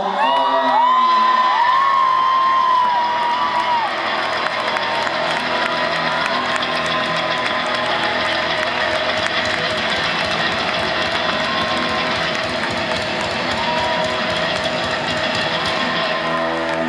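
Concert crowd cheering, whooping and clapping as a rock song ends, with high wavering screams in the first few seconds that then settle into steady cheering.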